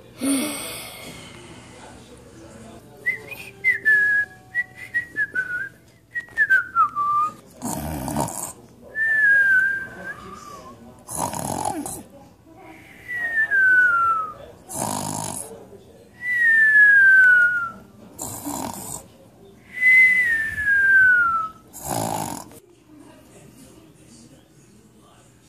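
A person making cartoon-style snoring sounds with the voice: harsh snorted in-breaths, each followed by a long whistle falling in pitch, repeating about every three and a half seconds. Earlier on comes a run of short whistled notes stepping downward.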